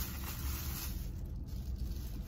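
Low steady rumble inside a car cabin, with a faint hiss that fades out in the first second.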